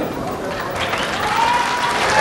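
Audience applauding in a hall, with voices from the crowd over the clapping.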